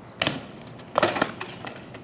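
BMX bike hitting concrete: a sharp impact, then about a second in a louder one followed by a brief metallic rattle of the bike.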